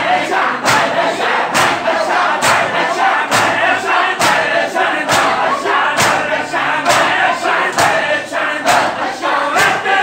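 Men performing matam, striking their bare chests with open hands in unison: a loud slap just over once a second in a steady beat, with the crowd chanting a noha between the strikes.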